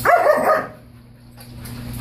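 A dog gives one short bark, about half a second long, right at the start.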